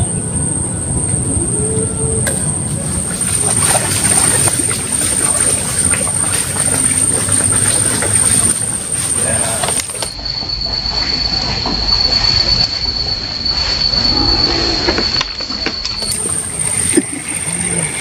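Steady outdoor background noise with a constant high-pitched whine over it. In the middle stretch the whine drops to about half its pitch, because that part of the footage is slowed down.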